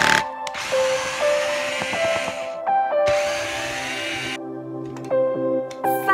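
Cordless drill driving screws into a caster's mounting plate: two runs of motor whir, the first about two seconds long and the second about a second and a half, over background music.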